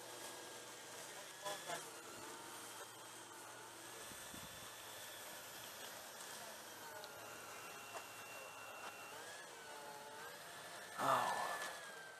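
Faint whine of an electric RC model aircraft's motor, holding a steady pitch and then sliding up and down as the throttle changes. A voice comes in briefly near the end.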